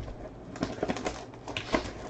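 Plastic shrink wrap crinkling, with a scattering of small, faint crackles and clicks, as it is peeled by hand off a sealed box of trading cards.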